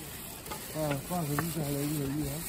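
A man's voice talking, starting about two-thirds of a second in, over a steady hiss of background noise.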